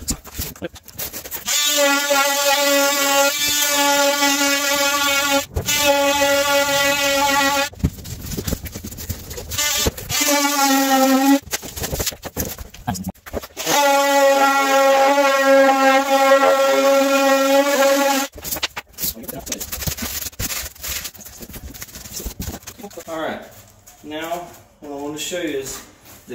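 Oscillating multi-tool cutting through a foam shower tray, running in three bursts of a few seconds each with a steady buzzing tone. The pitch sags briefly near the end of the second burst as the blade loads up. Knocks and handling noise follow.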